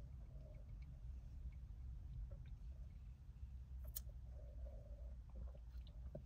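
Quiet car interior: a low, steady rumble, with a faint hum twice and one sharp click about four seconds in.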